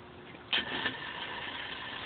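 A motor starts suddenly about half a second in, then runs steadily with a faint whine.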